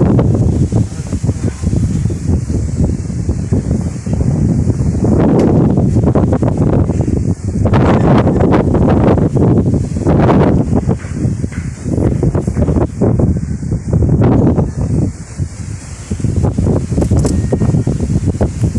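Wind buffeting the microphone: a loud low rumble that swells and drops in uneven gusts.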